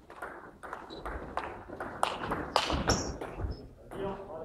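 Table tennis ball being hit back and forth in a rally: a quick series of sharp clicks off the bats and the table, about three a second, with low thuds underneath.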